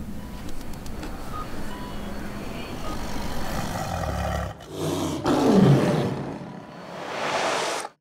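A tiger's roar sound effect about five seconds in, sliding down in pitch, over a low steady soundtrack bed. It is followed by a swelling rush of noise that cuts off suddenly.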